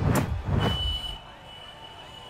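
The song's music drops away after a couple of short hits, leaving a single steady high-pitched electronic tone held over a faint background.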